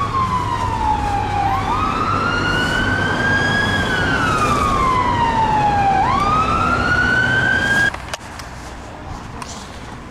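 An emergency vehicle's siren in a slow wail: the tone sweeps up quickly and falls away slowly, about every four to five seconds, over traffic noise. It cuts off suddenly about eight seconds in.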